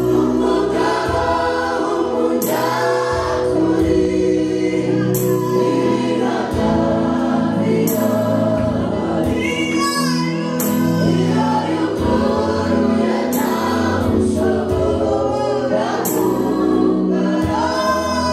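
Gospel praise and worship singing: women lead on microphones while a group choir sings along, amplified through the sound system, with a steady bass line beneath.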